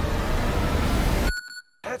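A loud, dense low rumble cuts off suddenly a little after halfway, leaving a single short metallic ding ringing briefly in near quiet.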